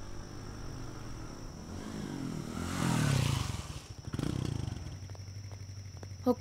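Motorcycle engine running, growing louder to a peak about three seconds in, then easing back to a steady idle.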